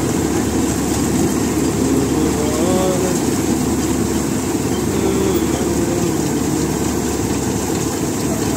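Tractor-mounted Satnam 650 mini combine harvester working under load as it cuts and threshes standing wheat: the tractor engine and the threshing machinery run together in a loud, steady drone.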